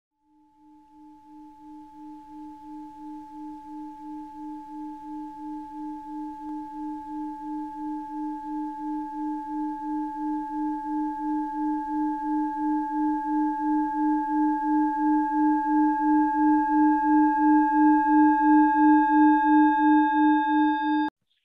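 A singing bowl sustained by rubbing its rim: a low pulsing hum with a higher ringing tone above it. It swells slowly louder throughout, and more overtones join in the second half.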